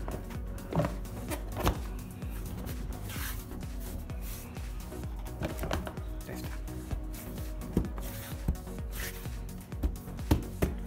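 Background music over a series of short plastic knocks and clicks as a plastic engine cover is pressed and snapped down into place over the engine.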